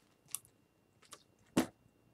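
Quiet handling sounds: a few small clicks and taps, with one louder, brief knock about one and a half seconds in.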